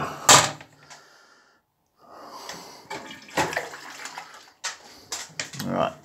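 A sharp knock just after the start, then quiet, then a string of lighter clicks and knocks over a low rustle.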